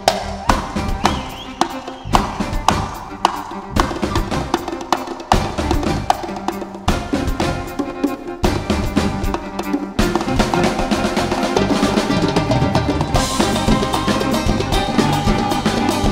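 Andalusian orchestra playing live without singing, an instrumental passage driven by sharp drum strokes over the melody instruments. About ten seconds in, the ensemble fills in and the sound becomes fuller and steadier.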